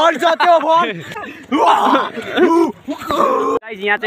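Young men talking. The speech breaks off suddenly near the end and a different voice starts.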